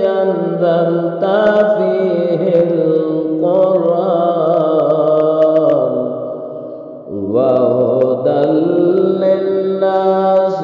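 A single voice chanting an Arabic Ramadan supplication in a slow, drawn-out melodic recitation, long phrases held and bent in pitch. It fades into a short breath pause about seven seconds in, then resumes.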